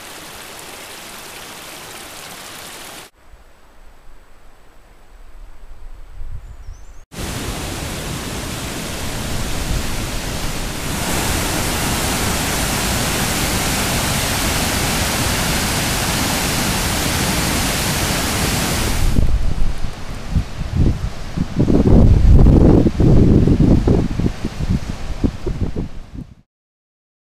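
Running water in a string of short shots: a small forest brook first, then the churning rapids of a waterfall, much louder and steady. Over the last several seconds, low buffeting rumbles come and go over the rush of water.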